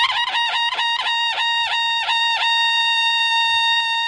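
A single high melody note from a synthesizer lead, re-struck about four times a second for the first half, then held steady.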